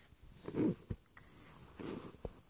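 A baby's two short breathy vocal sounds, very close to the microphone, about half a second in and again near the end, with a couple of light knocks between them.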